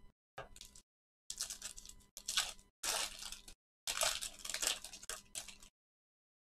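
Crinkling of a clear plastic card sleeve or holder handled in gloved hands, in about five short crackly bursts.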